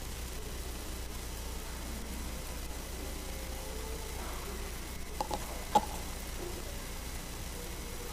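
Steady low hum and hiss of a church sound system with an open microphone, broken by two small sharp taps about five and six seconds in, the second louder, as the preacher handles his Bible at the wooden pulpit.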